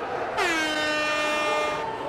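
A single held horn-like note, rich in overtones, that slides down briefly as it starts about a third of a second in, then holds steady for about a second and a half.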